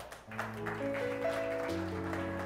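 Kurzweil stage keyboard opening a slow ballad with soft, sustained chords that come in about a quarter second in. The last few claps of applause fade out at the start.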